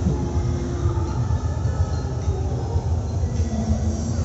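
Steady low rumbling din of a busy exhibition hall, with faint distant voices or music in it.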